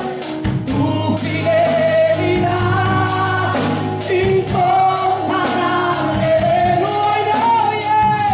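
Live gospel worship music: a singing voice through the church sound system over a band with a steady beat.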